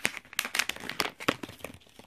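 Makeup brush packaging crinkling and tearing as it is worked open by hand: a rapid, irregular run of crackles.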